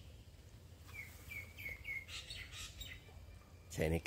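A songbird calling: a quick run of four short, falling whistled notes about a second in, then fainter high calls.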